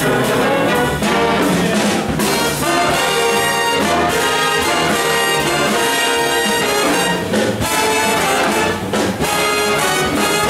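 A big jazz band playing a swing arrangement live, with trumpets, trombones and saxophones out front over guitar, bass and drums.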